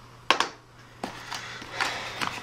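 Handling noise from unpacking a camera's accessories from its box: a sharp knock about a third of a second in, a softer click about a second in, then rustling of plastic and cardboard packing near the end.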